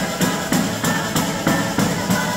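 Live southern Italian folk dance music, pizzica or tarantella style, with violin and accordion over a fast steady tambourine beat of about three strokes a second.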